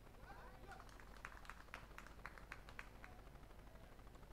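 Near silence: a faint distant voice, then a run of about ten faint sharp clicks or claps in the middle.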